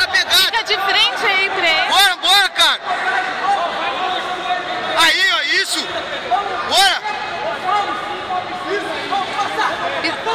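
Speech only: loud shouted calls from nearby voices, strongest in the first three seconds and again briefly about five and seven seconds in, over steady crowd chatter.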